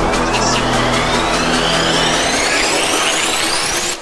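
Electronic background music with a rising sweep that climbs steadily in pitch for about four seconds and cuts off at the end.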